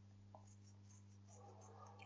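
Near silence: room tone with a low steady hum and a faint tap about a third of a second in.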